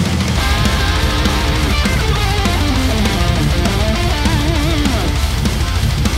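Heavy metal track playing back: distorted electric guitars over a fast sixteenth-note kick drum pattern that comes in just after the start, with a lead guitar melody bending and wavering in pitch. The kick is dipped about one and a half decibels by automation through this fast passage, so it sits more evenly in the mix.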